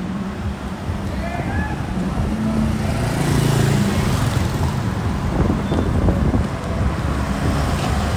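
Road traffic: a steady rumble of engines and tyres, getting louder around three to four seconds in.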